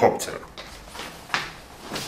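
A spoken word ends, then a single sharp click comes a little over a second in.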